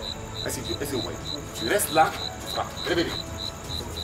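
A cricket chirping steadily in short, evenly spaced high chirps, about four a second, with voices heard between them.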